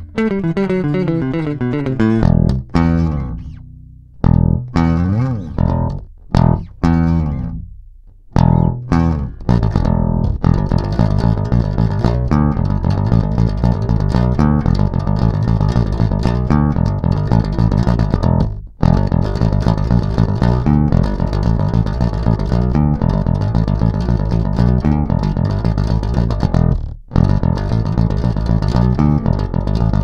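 Five-string electric bass guitar playing a heavy metal bass line on its own, with no other instruments. It opens with a falling slide and stop-start phrases, then settles into a fast, driving run of notes with short breaks.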